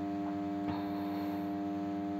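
A steady, even drone of several held tones, with no change in pitch or level.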